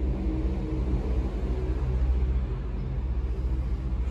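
Steady low hum of an idling diesel truck engine, unchanging in pitch throughout.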